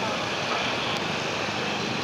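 Steady street traffic noise from vehicles on a busy road, with a brief click about a second in and a faint voice near the end.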